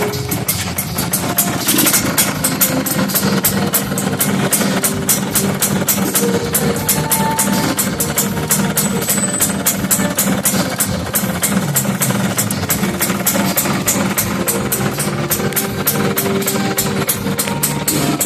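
Motorcycle engine idling through an aftermarket segmented ("6-cut") expansion-chamber exhaust, mixed with background music that has a steady beat.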